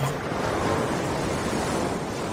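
Ocean waves: a steady wash of surf.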